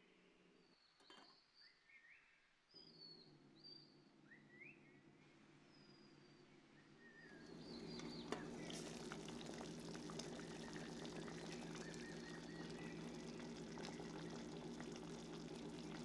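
Faint scattered chirps, then from about halfway the steady bubbling of kabocha squash simmering in water in a lidded stainless pan, with many small crackles and pops over a low hum.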